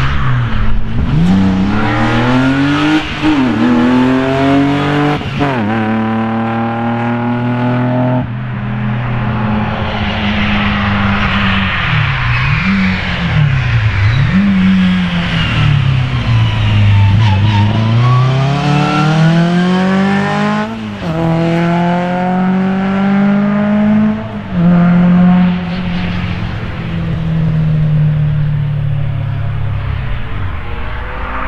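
Race car engines at hard throttle on a circuit. Their pitch climbs and breaks at several gear changes and swings up and down in the middle as the throttle is worked. Tyre squeal runs through part of it, from a BMW E36 drifting in tyre smoke and a Škoda Felicia pickup race car being driven fast.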